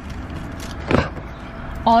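A car door being opened from inside: one short clack of the latch about a second in, over a low steady rumble.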